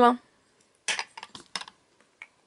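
Glass perfume bottle set down on a mirrored glass tray: a quick cluster of hard clinks and knocks of glass on glass about a second in.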